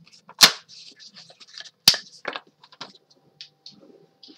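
Sliding paper trimmer cutting through chipboard and being handled: two sharp snaps about a second and a half apart, with lighter clicks and taps between.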